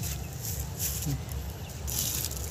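Quiet outdoor background with a low steady rumble, and one short spoken word about a second in.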